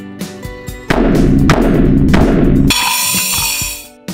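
Children's toy drum kit with PVC drum heads and a stainless-steel cymbal being played. Three heavy drum hits with a deep bass-drum thud come about a second in, then a cymbal crash rings and fades away near the end.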